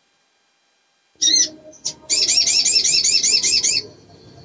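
Female olive-backed sunbird calling: one short note about a second in, then a fast trill of repeated chirping notes, about seven a second, for nearly two seconds. It is the call of a female in breeding condition, used to draw males.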